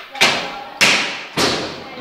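Three thumps about 0.6 seconds apart, each dying away quickly.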